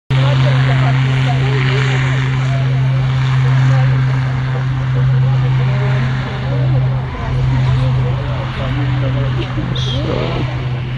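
A steady low engine drone, with the voices of people around it.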